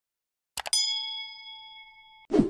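Subscribe-animation sound effect: two quick mouse clicks about half a second in, then a notification bell ding that rings with a clear tone and fades over about a second and a half.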